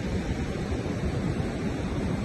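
Wind buffeting the phone's microphone with a steady, unsteady low rumble, over the continuous rush of surf breaking on the beach.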